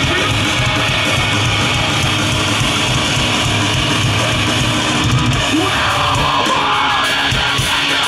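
Live metalcore band playing loud and steady, with distorted electric guitars, bass and drums, heard from within the crowd.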